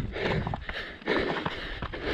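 Running footsteps on a rocky, gravelly dirt trail: trail shoes striking and scuffing the loose stones in a quick rhythm.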